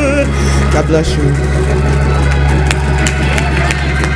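Church organ holding low sustained chords as a long, wavering sung note breaks off just after the start, with voices and scattered sharp taps over the organ.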